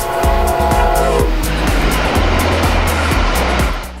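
Brightline passenger train passing at speed: a held horn chord for about the first second, then a loud rush of wheel and air noise as the train goes by, easing just before the end. Background music with a steady beat runs underneath.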